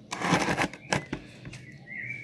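Rustling and several sharp clicks of handling noise in the first second or so, then quieter, with a faint bird chirp near the end.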